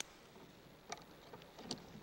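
Metal keys on a key ring clicking faintly against a door lock as they are fumbled at the keyhole, three light clicks about a second apart.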